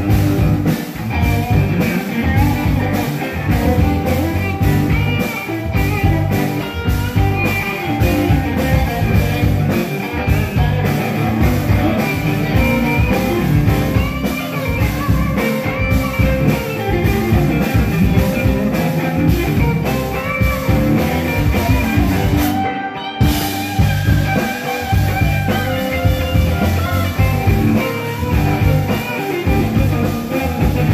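Live band playing electric guitars, electric bass and drum kit to a steady beat.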